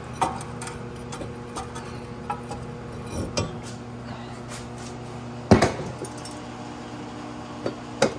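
Cast-iron brake rotor being taken off the hub and handled: a few light metallic clinks, then about five and a half seconds in one sharp metallic clank with a short ring, under a steady low hum.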